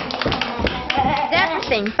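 A group of young children clapping their hands: a quick, uneven patter of claps.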